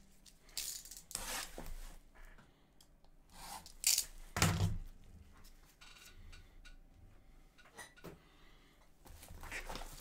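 A sealed hockey card box being handled and opened: a series of short rustles and scrapes of cardboard and wrapping, with a louder thump about four and a half seconds in.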